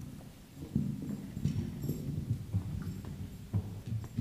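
Soft, irregular low thumps and knocks, a few a second, with no speech or music yet.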